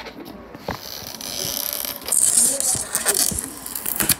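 Rustling and scraping close to the microphone for a homemade ASMR recording, much louder from about halfway through, with a few small clicks.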